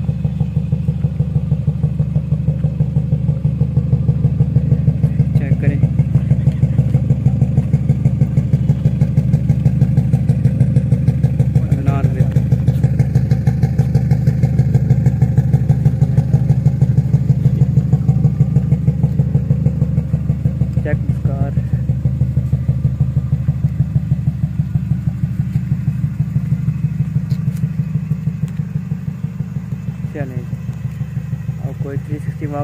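Car engine running steadily at idle, a low, even throb.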